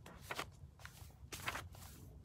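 Faint rustling of a book's paper pages being handled: four or five short, hissy brushes spread over the two seconds.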